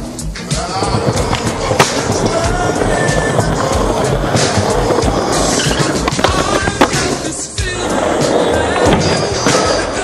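Skateboard wheels rolling on concrete, with sharp clicks of the board popping or landing about two seconds in and again near seven seconds, under music.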